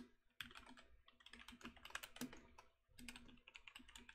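Faint computer keyboard typing, in three short runs of keystrokes with brief pauses between them.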